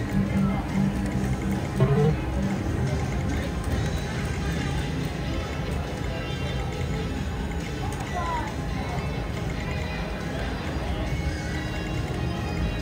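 Casino floor ambience: a steady mix of slot machine music and jingles with background chatter, under the electronic sounds of a video poker machine dealing and drawing cards.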